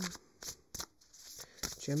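An oracle card deck being shuffled by hand: a run of short, soft card snaps and slides, loudest as the cards riffle together.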